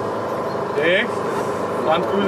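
Scattered voices of people in a crowd over a steady, running engine hum.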